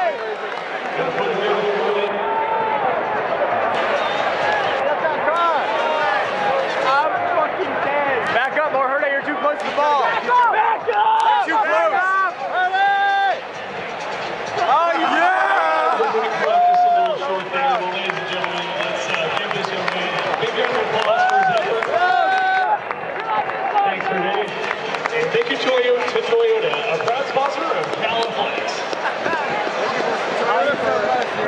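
Stadium crowd noise: many voices shouting and talking at once, with a brief lull about 13 seconds in.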